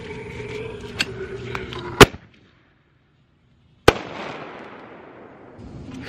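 Handheld firework mortar tube firing. The lit fuse hisses for about two seconds, then the shell launches with a very loud bang. A second sharp bang about two seconds later trails off in a fading hiss.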